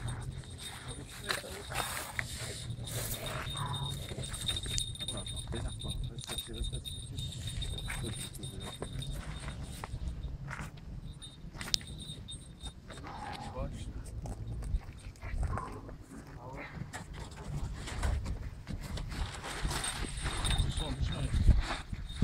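Splashing and handling noise as a large wels catfish is hauled by hand out of shallow water onto a grassy bank, with many short knocks and rustles over a steady low rumble. Muffled voices come and go.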